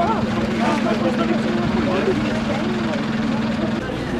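Steady low hum of an idling vehicle engine under several people talking close by; the hum stops shortly before the end.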